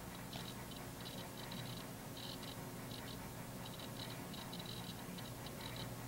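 Quiet room tone: a faint steady low hum with faint, irregular scratchy ticks scattered through it.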